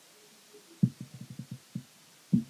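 A man's soft, low chuckle: a quick run of short pulses about a second in.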